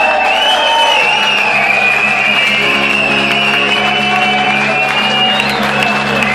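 Live rock band with amplified electric guitars ringing out over a steady low drone, heard from within the audience, with applause from the crowd mixed in.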